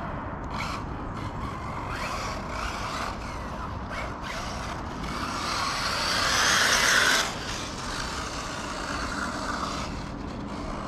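Kyosho MP9e electric 1/8-scale buggy driving on a dirt track: drivetrain whine and tyres on loose clay, loudest as it passes close by about six to seven seconds in, then dropping off suddenly.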